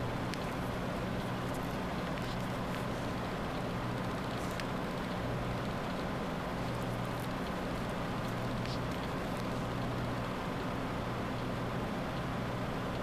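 Steady low background hum with hiss, unchanging throughout, with a few faint clicks.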